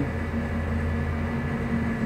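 A steady low mechanical hum with no other events.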